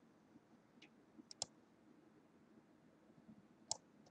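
A few sharp computer-mouse clicks over near silence: a faint one about a second in, a quick pair just after, and one more near the end.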